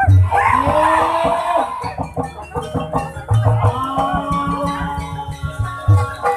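Ebeg Banyumasan music: Javanese gamelan-style ensemble with drum strokes and held metallic tones, playing loudly.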